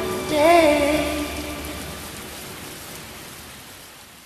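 The end of a song: a singer holds one last wavering note in the first second, then the track fades out under a steady hiss.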